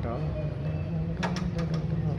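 A locked glass door being tried: a few sharp clicks and rattles about a second in, as it is pulled against its lock. A steady low hum runs underneath.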